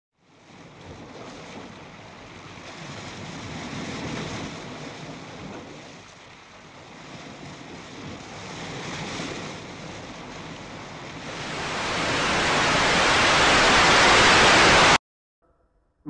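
Television static: a steady hiss that swells and fades twice, then builds up loud and cuts off suddenly about a second before the end.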